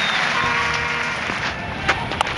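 Cricket ground crowd noise with a held steady note from the stands about half a second in, then one sharp crack of bat on ball near the end.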